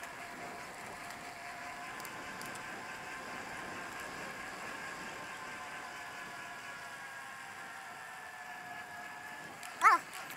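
Steady noise of a bicycle rolling along a paved trail, with faint steady whining tones over it. Near the end comes one brief, loud, rising pitched sound, like a short vocal call.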